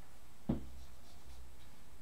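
Dry-erase marker writing on a whiteboard, drawing a small circled minus sign, with one light knock about half a second in.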